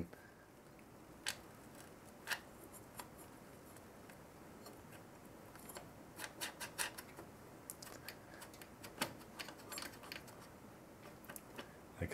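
Faint scattered clicks and scratching of threaded standoffs being turned by hand onto a CPU cooler backplate's bolts around the motherboard socket, each one turned until it reaches its stop. A few isolated clicks come in the first few seconds, with quicker runs of clicks from about halfway in.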